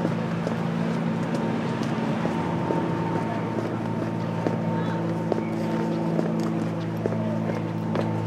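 A steady low mechanical hum with a faint higher whine above it, holding unchanged throughout, with a few light clicks.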